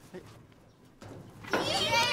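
A group of children shouting a chant together in high voices, starting loudly about one and a half seconds in after a quiet first second.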